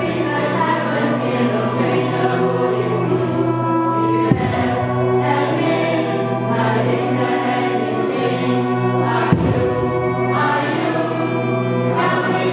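A choir singing in a church, holding long chords in several voices, with new phrases coming in about four and nine seconds in.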